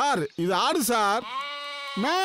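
Goat bleating: a short falling cry, then a longer wavering one, then a quieter held one.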